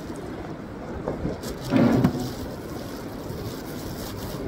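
Thin plastic bag crinkling as it is pulled out of a backpack and its knotted handles are worked at, over a steady rushing background noise. A brief louder sound comes about two seconds in.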